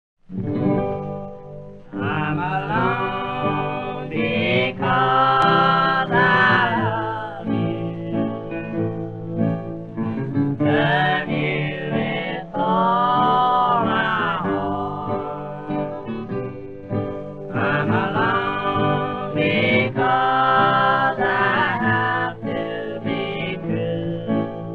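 1934 old-time country recording: acoustic guitar accompaniment under a wavering sung melody, with the narrow, muffled sound of an early 78 rpm record.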